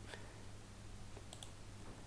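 A few faint clicks from a computer mouse over a low, steady hum.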